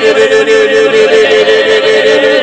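A voice praying in tongues: a fast, unbroken run of repeated nonsense syllables held on one high, steady pitch.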